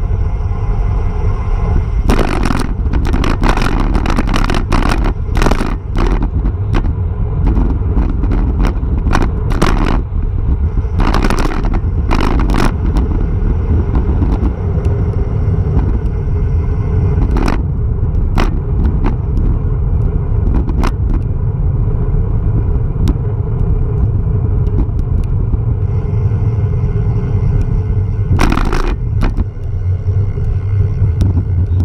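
Wind rushing over a handlebar-mounted camera's microphone on a road bike descending at speed: a loud, steady low rumble with tyre noise on the asphalt, broken by frequent short knocks and crackles.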